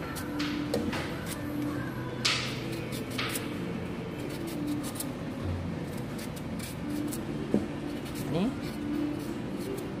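Kitchen knife cutting and scraping the thick green peel off an unripe nipah banana: a few short scraping strokes, the two loudest a little after two and three seconds in.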